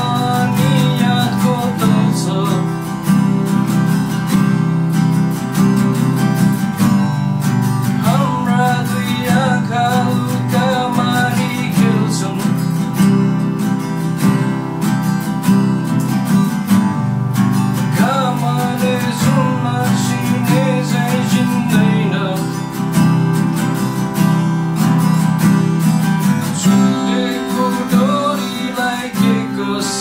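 Two acoustic guitars strumming a song while a man sings the melody over them, his voice coming in and out between phrases.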